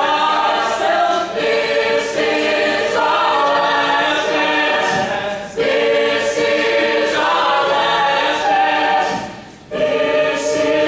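A cappella group of mixed men's and women's voices singing chords behind a male lead vocalist singing into a handheld microphone. The singing drops away briefly twice, about halfway through and just before the end.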